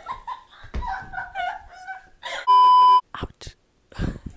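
Girls' voices without clear words for about two seconds. Then, about two and a half seconds in, a loud steady electronic beep at one pitch for about half a second cuts off suddenly into near silence, broken by a couple of soft clicks.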